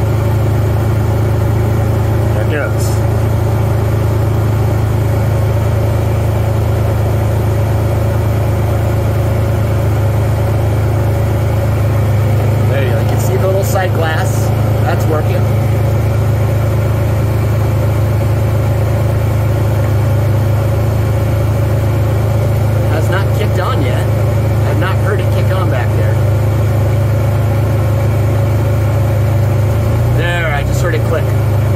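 Pontiac Fiero engine idling steadily with the air conditioning on full and the compressor engaged, while the low-charged system takes on R134a refrigerant.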